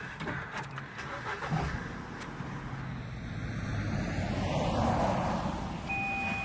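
Small hatchback car (Ford Fiesta) driving slowly, its engine and tyres a steady low rumble that grows louder as it pulls up. A few light knocks and rustles come in the first second or two.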